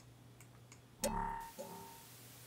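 Two faint computer mouse clicks as the paste command is chosen. About a second in comes a louder held, pitched sound, a drawn-out hesitant 'the...', which briefly stops and starts again.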